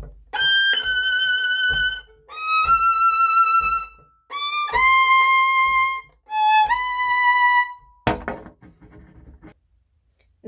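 Solo violin played high on the fingerboard: four slow phrases, each a quick lead-in to a long held note, stepping down in pitch from phrase to phrase. A short knock comes about eight seconds in.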